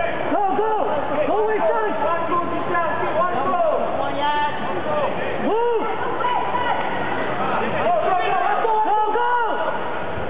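Men's voices shouting short calls over the murmur of a crowd in a hall.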